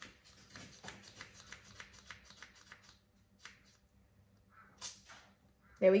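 A plastic vaccinator gun being squeezed over and over to prime it, drawing vaccine down the tube from the bottle. It gives a fast run of soft clicks for about three seconds, then a few more near the end.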